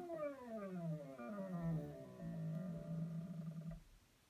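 AutoTrickler V2 powder trickler's motor whining, its pitch falling steadily over the first second and a half, then holding low until it cuts off just before the end. This is the trickler ramping down as the powder charge nears its 44-grain target.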